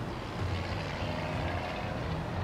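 Low, steady rumble of road traffic, with heavy vehicles going by.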